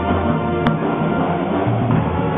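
A high school band playing: sustained held chords with drums underneath, and one sharp hit about two-thirds of a second in.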